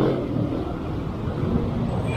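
Road traffic: a passenger van driving close alongside, its engine and tyres a steady low rumble.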